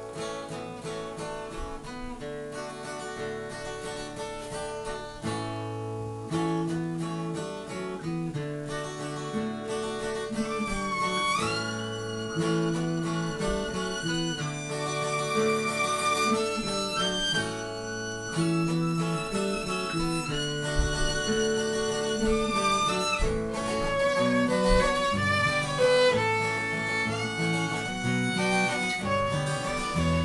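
Instrumental folk-style music: an acoustic guitar played steadily while a violin plays a melody over it, gliding up in pitch about a third of the way in. The music grows gradually louder.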